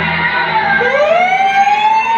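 A long, siren-like electronic tone rising slowly in pitch over a steady low hum, the dramatic sound effect for a demon's entrance on stage.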